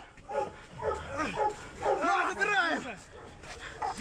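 A pit bull barking and yelping several times, mixed with men's shouts.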